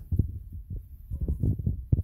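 Irregular dull low thumps and rumble, several a second, with no voices.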